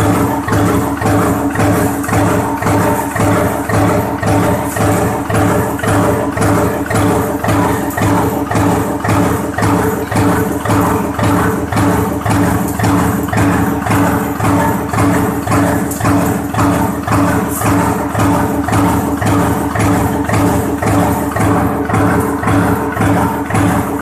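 Mechanical power press stroking continuously with its shaft-driven mechanical gripper feeder, a regular clatter about twice a second over the steady hum of the press drive.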